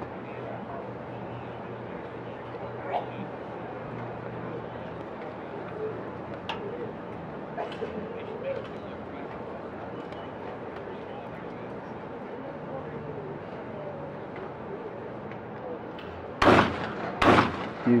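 Two 12-gauge shotgun shots about a second apart near the end, fired at a skeet doubles pair. Both targets are hit.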